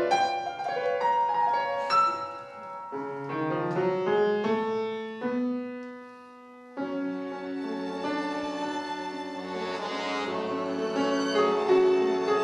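Live chamber trio of violin, Cooperfisa button accordion and grand piano playing tango and film music. About five seconds in the texture thins to one low held note that fades nearly out, and the full ensemble comes back in just before seven seconds.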